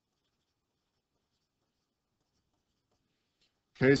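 Near silence: the audio is essentially dead quiet until a man's voice comes in at the very end.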